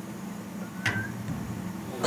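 A steady low hum with one sharp click about a second in.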